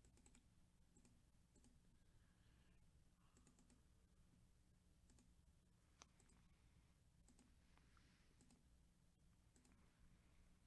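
Near silence, with faint computer mouse clicks scattered through it, several coming in the second half as a button is clicked again and again.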